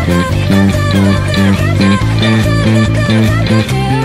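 Four-string electric bass playing a driving line of even eighth notes, about four a second, over a full pop-rock band recording with a singer.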